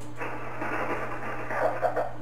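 Single-sideband receive audio from an Icom IC-756PRO III transceiver: the hiss of band noise, cut off above voice range, comes on a moment in as the other station keys up, with faint voice sounds near the end. A steady low hum runs underneath.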